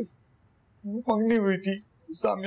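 A short, quavering, voice-like sound, about a second long, starting about a second in, its pitch wavering rapidly.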